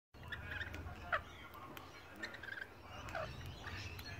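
Rainbow lorikeets giving short chirping calls every half second or so, several of them falling in pitch, with a few sharp clicks between.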